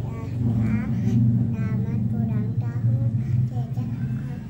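Quiet, indistinct voices talking over a steady low hum.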